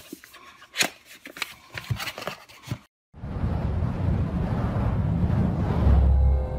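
A cardboard product box handled with light taps and scrapes. About three seconds in the sound cuts out briefly, then a rush of noise with a deep rumble builds up: the sound effect of an animated logo intro.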